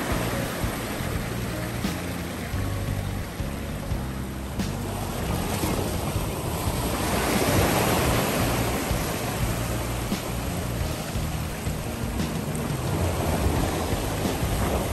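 Ocean surf washing over shoreline rocks, a steady rush of water that swells into a louder breaking wave about seven to nine seconds in.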